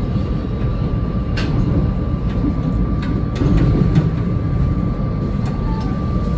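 SEPTA electric commuter train running along the track, heard from the cab: a steady low rumble of wheels on rail with a thin steady high hum over it and a few sharp clicks.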